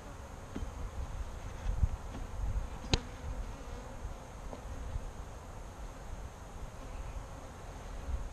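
Saskatraz honeybees buzzing around an open hive, with a sharp click about three seconds in and a few lighter knocks as a wooden frame is worked loose and lifted out of the hive body.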